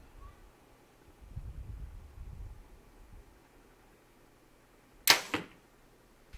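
A compound bow shot: a sharp snap of string and limbs on release about five seconds in, then a second, weaker hit a quarter second later as the arrow strikes the target.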